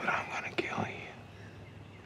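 A man's short breathy whisper, lasting about a second near the start, over a steady low hum.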